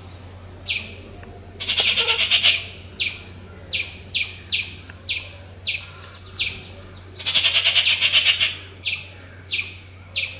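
Bird calls: two harsh, rapid rattling chatters about a second long, about two seconds in and again near the end, with a string of short, high, downward-sliding chirps repeated every half second or so between them.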